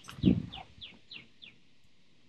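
A songbird singing a run of short whistled notes, each sliding downward, about three a second, stopping about one and a half seconds in. A brief low thump sounds just after the start.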